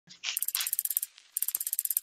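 Rapid clicking sound effect, about a dozen clicks a second, in two bursts of under a second each, like a ratchet or fast data-readout ticking.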